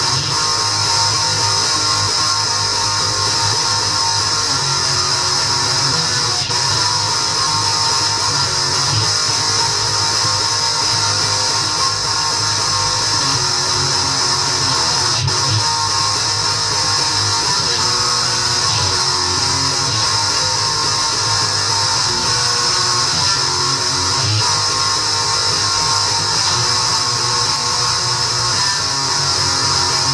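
Guitar strummed continuously and loudly in a steady rhythm, the sound dense and distorted.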